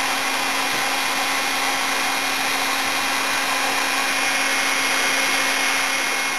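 Electric heat gun blowing steadily with a constant low hum, heating a thin wood strip so it softens and bends more easily.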